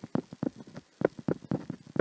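A stylus tapping and scraping on a tablet surface as letters are handwritten: a quick, irregular run of about a dozen light taps.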